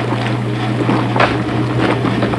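A steady low hum under a rushing noise.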